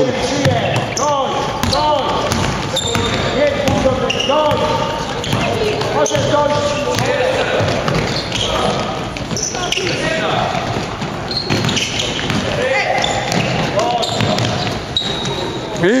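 Basketball game in play on a sports-hall court: young players and spectators shouting and calling out over a basketball bouncing on the floor.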